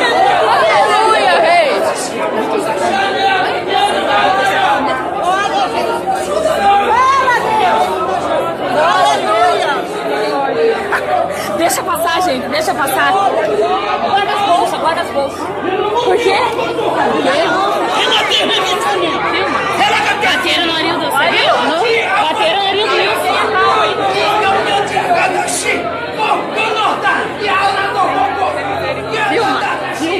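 Many voices talking over one another in a large, reverberant hall: a congregation in uproar.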